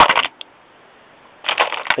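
Loaded .30 carbine cartridges clinking and rattling against each other in a plastic bin as a hand picks through them, in two short bursts: one at the start and one about one and a half seconds in.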